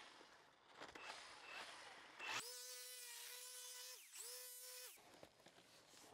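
An electric power tool's motor whining at a steady pitch for about two and a half seconds, dipping briefly in pitch near the middle before running up again, preceded by scraping and rustling.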